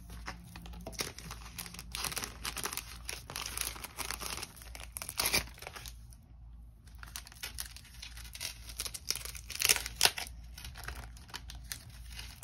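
Clear plastic cellophane sleeves crinkling and rustling as sticker sheets are handled and slid into them, in irregular spells with a short lull about six seconds in and the sharpest crackles around ten seconds.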